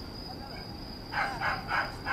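A dog barking in a quick run of four sharp barks in the second half.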